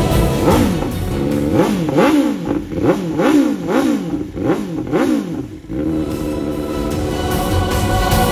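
BMW S1000R's inline-four engine revved through a Pro Race exhaust, the throttle blipped about two times a second so the pitch rises and falls repeatedly, until it cuts off suddenly near the end. Steady sustained tones follow.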